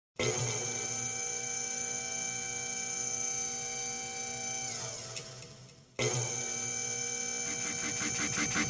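Opening of a hardtekk track: a sustained synth chord that bends downward in pitch and fades out about five seconds in, then cuts back in sharply a second later, with a pulsing beat starting near the end.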